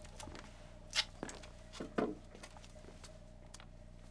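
Quiet room with faint handling noise: a few soft clicks and knocks, the clearest about one and two seconds in, as the arch frame and a tape roll are handled and moved around.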